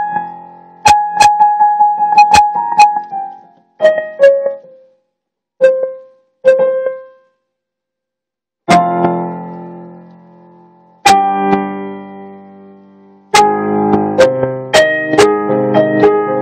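Solo piano played unaccompanied in loose phrases: a run of quick repeated notes, then sparse single notes and a silence of about two seconds, then chords left to ring out and fade, and a busier passage near the end.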